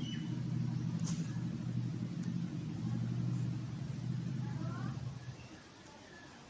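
A low, steady engine rumble, like a motor vehicle running, fading out about five seconds in.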